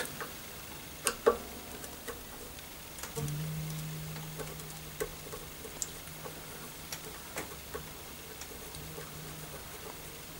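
Small clicks and ticks of a screwdriver turning the truss rod cover screws on a Taylor acoustic guitar's headstock, with two louder clicks about a second in. Just after three seconds in a low guitar string starts ringing steadily and slowly fades.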